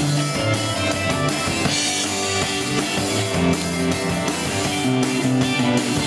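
A rock band playing live at full volume: electric guitar and drum kit in a steady groove, recorded from the crowd close to the stage.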